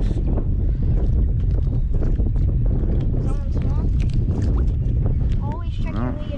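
Wind buffeting the microphone in a steady low rumble, with small handling ticks and faint distant voices a few seconds in and near the end.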